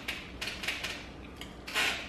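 Biting into and chewing a breakfast burrito: a few short crackling clicks about half a second in, then a brief rush of noise near the end.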